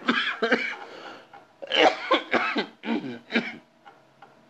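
A man coughing: a fit of several short, harsh coughs, the loudest a little under two seconds in.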